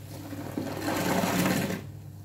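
A soapy wet sponge squeezed in the hands, a crackling, sloshing squelch of suds and water forced out of it. It swells about half a second in, is loudest near the end and fades just before it.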